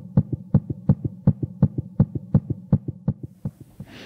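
Heartbeat sound effect: a fast, even double thump (lub-dub), about three beats a second, over a steady low hum, fading out near the end.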